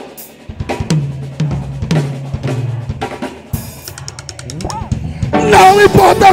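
Acoustic drum kit playing a break: snare and bass drum hits with cymbals, and a quick roll about four seconds in. Singing and the full band come back in near the end.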